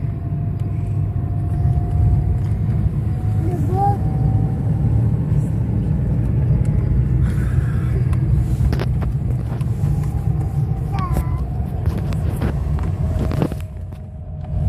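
Car driving along a road, heard from inside the cabin: a steady low engine and tyre rumble, with a few light clicks and rattles in the second half.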